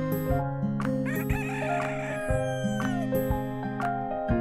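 A rooster crowing once, starting about a second in and falling away at the end, over gentle plucked acoustic guitar music.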